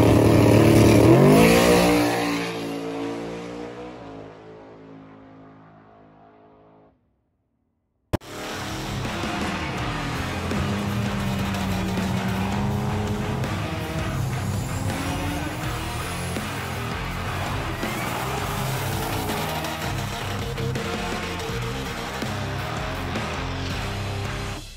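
A Coyote V8 Mustang drag car launches hard off the starting line, its engine note falling and fading as it pulls away over about seven seconds. After a second of silence, music plays over a van doing a burnout, with tyre squeal and engine noise.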